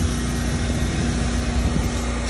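Pressure washer running steadily, its engine hum under the hiss of water spraying from the wand onto concrete.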